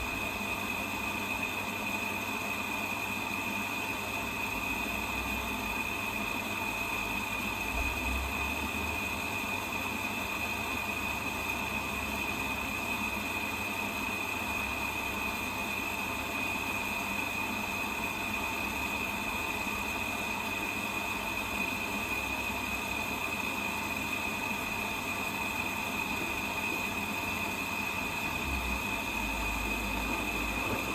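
Zanussi front-loading washing machine running at the end of its main wash, just before the first rinse: a steady mechanical hum with a constant high whine and a couple of low rumbles from the drum. Steady rain noise runs underneath.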